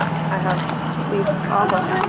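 Steady low hum of an idling vehicle engine, with voices calling over it, strongest near the end.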